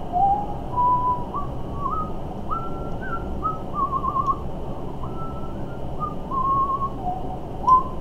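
A man whistling an idle tune with his lips: one clear pitch stepping from note to note, with a couple of short warbles along the way.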